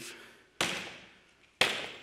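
Two suitcases dropped from arm's height onto a stage floor: two heavy thuds about a second apart, each with a short ring-out.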